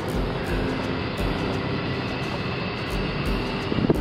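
Vehicle engine and road noise heard from inside the cab while driving, a steady rumble with a louder knock near the end.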